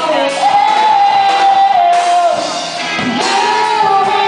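Live rock band cover performance: a female lead vocal holds long sung notes over electric guitars, keyboard and drums.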